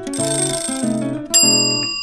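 Strummed acoustic guitar background music, with a short hiss over the first second. About 1.3 seconds in, a bright bell-like chime strikes and rings on with a long decay: the quiz's cue for the correct answer being revealed.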